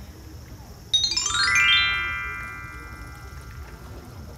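A descending chime glissando, a bright run of bell-like notes stepping quickly down in pitch about a second in, each note ringing on and fading away over the next two seconds: a sparkle sound effect of the kind laid over a title card in editing.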